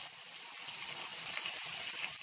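Chopped onion and tomato frying in oil in a kadai, a steady sizzle, while a spatula stirs them.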